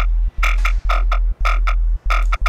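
A Serum synth jump-up bass patch plays a repeated note about twice a second, with short gaps between notes. Each note is a very deep sub-oscillator tone under a band-pass-filtered, distorted and phased upper tone. The filter cutoff is being turned down.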